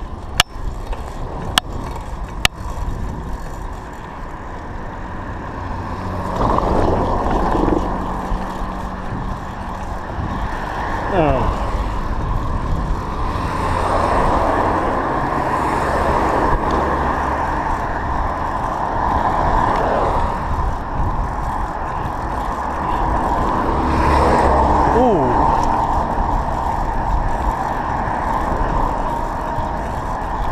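Riding noise from a bicycle picked up by a GoPro action camera: a steady rush of wind and tyres on tarmac that grows louder a few seconds in. A few sharp knocks near the start as the bike jolts over a bump, and passing motor vehicles, two of them dropping in pitch as they go by, about eleven seconds in and near twenty-five seconds.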